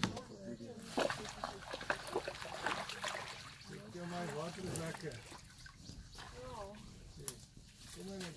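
Wet mud and water sloshing and splashing as white rhinos wallow in a mud bath, with many short splashy clicks in the first few seconds. People talk over it in the middle.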